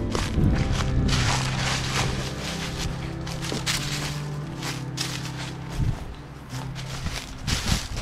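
Footsteps crunching through dry leaf litter, over background music with sustained low notes.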